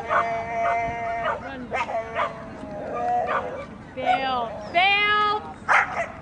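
A dog whining and yelping in a string of high, squealing cries, one after another, a few of them drawn out for a second or so: the excited 'pig noises' of an agility dog waiting her turn.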